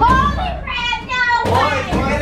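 Excited, high-pitched young voices shrieking and laughing, strongest in the middle.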